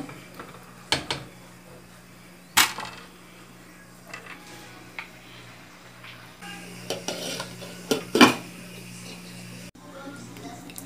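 Silicone spatula stirring a pot of pumpkin and dried-beef stew, knocking against the metal pot: a few sharp clacks, the loudest about two and a half seconds in and again about eight seconds in, over a steady low hum.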